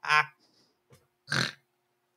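A man laughing in short, separated bursts: a brief voiced laugh at the very start, then a rougher, breathier burst about a second and a half in.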